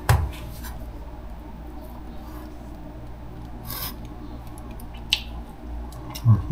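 Kitchen knife slicing smoked salmon on a wooden cutting board: a sharp knock at the start, a short scrape of the blade about four seconds in, and a light tap near the end.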